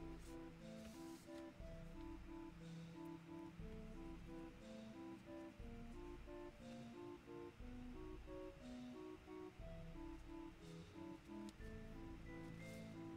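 Quiet background music: a run of short plucked guitar notes.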